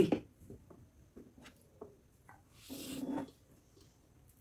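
A few faint clicks of forks on plates, then a short noisy slurp of a forkful of noodles being sucked into the mouth about three seconds in.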